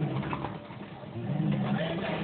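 Low, soft cooing voice sounds: several short held tones, each about half a second long.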